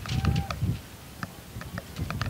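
Wind gusting across an open microphone in low, rumbling buffets, with scattered sharp clicks over it.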